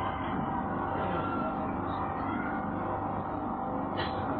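Steady low background noise with a faint low hum, without speech.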